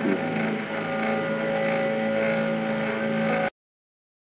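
A steady mechanical hum made of several held tones, with no change in pitch. About three and a half seconds in, the sound cuts out abruptly to dead silence.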